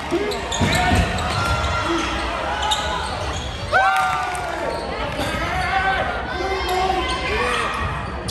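Basketball game sounds in a large gym: a ball bouncing on the hardwood floor and short high squeaks of sneakers on the court, over the chatter of the crowd.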